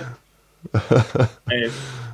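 Speech only: a man's voice, talking again after a short pause.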